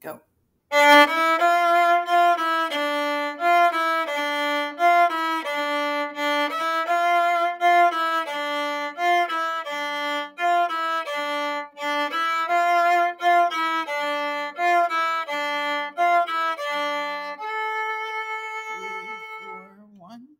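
Solo viola bowed in a steady run of short, separate notes, ending on one long held note that fades out near the end.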